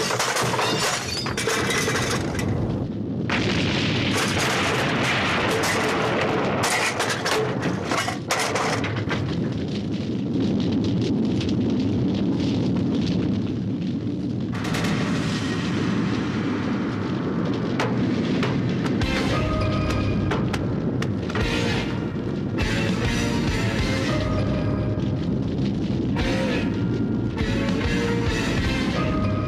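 Dramatic film score over booming explosion and fire sound effects. The first part is thick with crashes and crackle, and the music comes forward more clearly in the second half.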